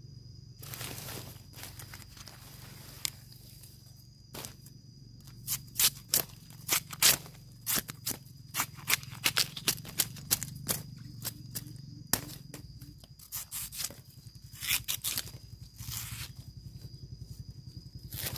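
A knife cutting the husk off a fresh bamboo shoot: an irregular run of sharp cuts and snaps as the blade slices into the shoot and the tough sheaths are split and pulled away, busiest from about four seconds in until near the end.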